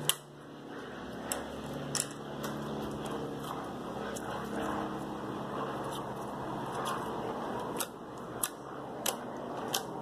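Hands squeezing and kneading a glossy slime, a soft continuous squishing broken by sharp little clicks, a few near the start and then about one a second in the last few seconds.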